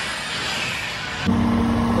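Even hiss of an indoor amusement game zone, then an abrupt cut to roadside traffic: a vehicle engine running with a steady low hum.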